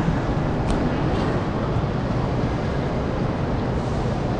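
Steady low rumbling background noise of a busy railway station platform, with no single event standing out.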